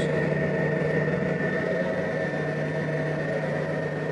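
Steady electrical hum and whir from a bench amplifier test rig, with a faint steady high-pitched whine, while a class-D power amplifier runs at around 900 W output into a test load.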